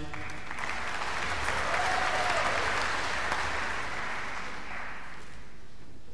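Audience applauding, building for about two seconds and then fading out about five seconds in.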